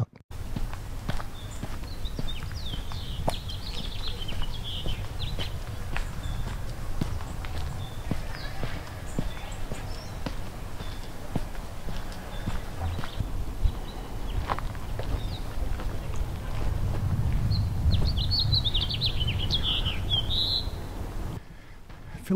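Footsteps on a dirt trail with small birds chirping, in a short run about a second in and again near the end, over a low rumble that grows louder toward the end.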